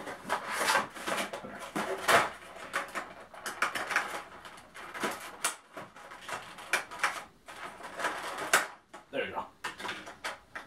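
Clear plastic blister tray and cardboard action-figure box being handled, rustling and crinkling in irregular bursts as the tray is slid out and set down.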